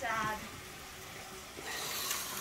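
Electric toy train running around its track, a faint steady whirring hiss that grows slightly louder near the end.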